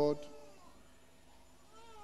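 The last held note of a congregational gospel song stops just after the start. It is followed by a hushed pause with only a few faint, distant voice-like glides.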